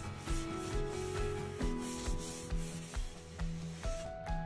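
A round wax brush scrubbing dark brown wax into painted wood, making a dry, repeated rubbing. Background music with a steady beat plays under it.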